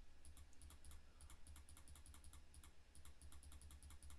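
Faint rapid clicking of computer input, keystrokes or mouse clicks, over a low steady hum.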